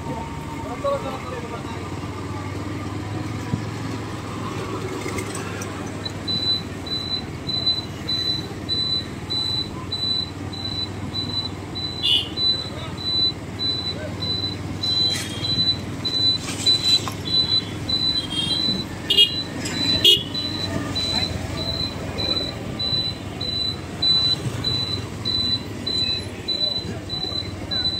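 Busy street traffic: vehicle motors running, with short horn toots and a few sharp clicks in the middle. From about six seconds in, a high electronic beep repeats rapidly.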